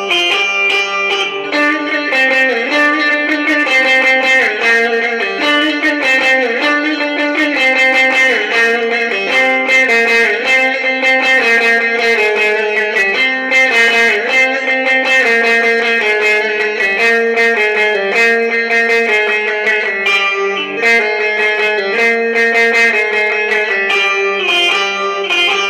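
Long-necked Turkish bağlama (saz) played with a pick: a fast instrumental passage of rapidly picked notes over a steady low drone from the open strings, with no singing.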